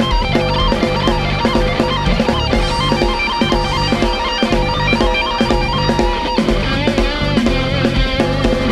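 Rock band music: electric guitar playing over a drum kit with a steady beat.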